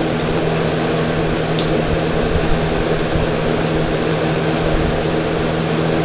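A steady machine hum: an even low drone with a noise hiss over it, unchanging throughout.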